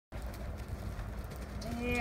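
A person's long, drawn-out vocal call begins about one and a half seconds in, held on one pitch, over a steady low rumble.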